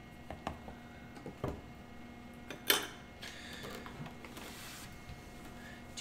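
A few soft clicks and taps of a plastic measuring spoon and a cream carton being handled, the sharpest about two and a half seconds in, over a faint steady hum.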